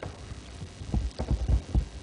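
Handling noise from PVC hose samples being moved and set back in a bundle on a table: a run of dull, low thumps and bumps, most of them in the second half.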